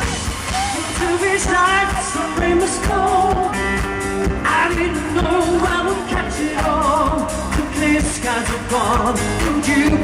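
Live pop song played by a band with several singers singing together over a steady drum beat, as heard from the audience of a concert hall.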